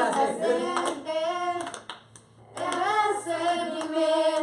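A group of young voices singing together a cappella, with hand clapping; the singing breaks off briefly about two seconds in, then resumes.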